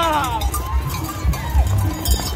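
Galloping horse's hooves thudding repeatedly on dry dirt, with a cowbell clanking and a man's shout that falls away in the first half second.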